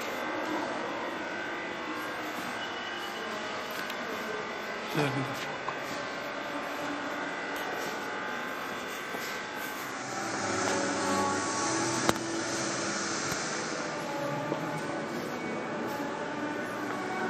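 Indistinct chatter of several people talking at once, no words clear, getting louder for a few seconds past the middle, with a single sharp click.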